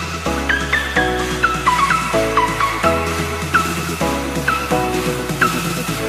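Background music: an electronic track with a bass line and chords that change about every two-thirds of a second, and short high notes that dip in pitch repeating over them.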